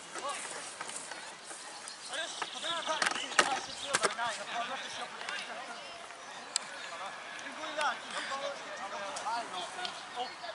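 Many overlapping, unintelligible voices of rugby league players and touchline spectators calling out at a distance, with a few sharp clicks about three to four seconds in.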